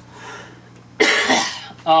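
A person coughs once, a single harsh cough about halfway through.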